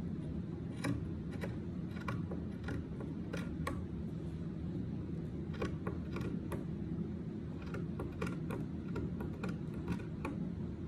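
Scissors snipping through black fabric: a run of irregular sharp clicks as the blades close, about two a second, with a short pause near the middle. They are cheap scissors that the cutter finds cut badly.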